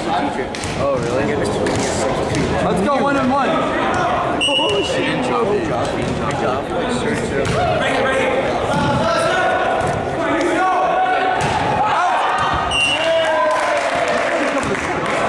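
Players and spectators calling and shouting in a school gym, with volleyballs struck and bouncing on the floor. Two short, steady whistle blasts, one about four and a half seconds in and one near the end.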